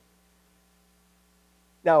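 Near silence with a faint, steady electrical hum; a man's voice starts speaking near the end.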